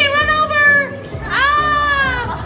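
A child's voice giving two long, wordless shouts, each about a second, the second starting about halfway through, over background music.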